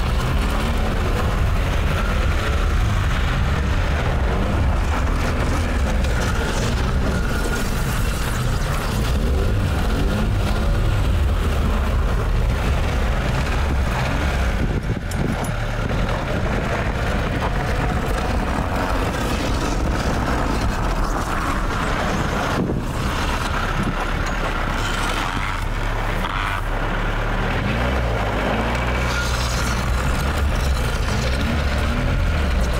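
A small Lada sedan's engine revving, its pitch rising and falling, while the rear wheels on ice tires spin on packed snow without grip. The sound drops briefly about halfway through.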